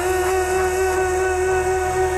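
Melodic techno / progressive house music: a long held synth note over an evenly pulsing bass line, with the drums dropped out.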